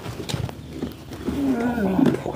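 A brief, low voice-like sound in the second half that falls in pitch, over a few faint clicks.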